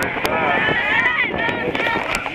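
Indistinct chatter of many spectators in the stands, with overlapping voices and a few sharp clicks.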